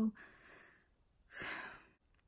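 A girl's breathing close to the microphone, like a sigh: a soft breath at the start and a louder one about a second and a half in.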